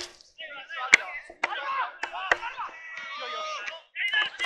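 Footballers' voices calling out on the pitch, one held call near the end, with a few sharp knocks about one and two seconds in.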